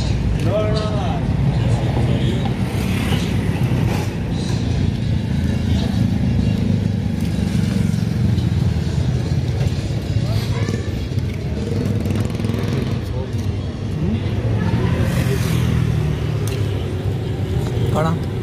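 Steady low engine rumble of road traffic, with men's voices talking at times.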